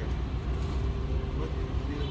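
Refuse truck's diesel engine running steadily, a low continuous rumble.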